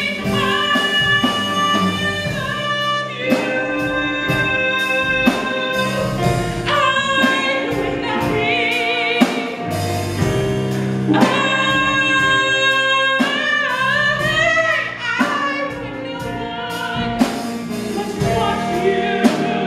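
Live stage music: a solo singer's held notes, some with vibrato, over band accompaniment with a steady beat.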